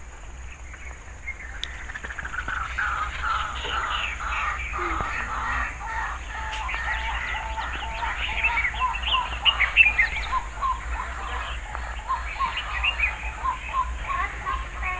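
A chorus of many birds chirping and calling at once, a dense stream of short quick notes that builds up over the first couple of seconds and carries on steadily.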